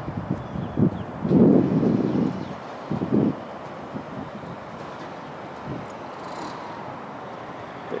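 Steady outdoor background noise, with a few short muffled noise bursts in the first three seconds, the longest about a second and a half in.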